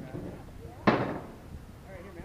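A single sharp knock about a second in, ringing out briefly, with faint voices around it.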